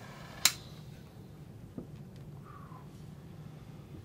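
A handheld lighter lighting a cigar clicks once sharply about half a second in, with a much fainter click about a second later, over a low steady room hum.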